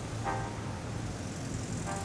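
Steady low rumble and hiss like distant road traffic, with a short faint musical note near the start and another near the end.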